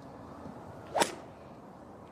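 A golf club swung through and striking the ball: a quick swish ending in a single sharp crack about a second in.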